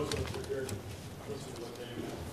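Faint, indistinct talking off-microphone in a large hall; no words can be made out.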